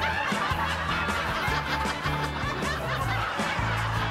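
A woman laughing in snickers and chuckles over backing music with a repeating bass line.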